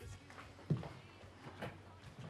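Slow footsteps on a wooden floor: two dull thuds about a second apart, the first louder.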